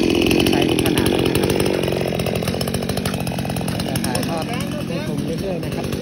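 Chainsaw engine running, faster and louder at first, then settling to a lower, steady idle about two seconds in.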